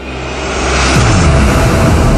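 A rising whoosh swells over about the first second into a loud, steady electronic drone with a deep bass underneath, the sound of an animated logo intro.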